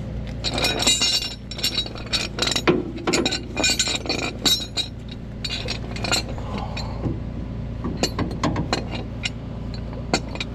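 Steel chain and hooks of a tow bridle clinking and rattling as they are handled and hooked up under a car: a dense run of sharp metallic clinks in the first half, then scattered clinks near the end, over a steady low hum.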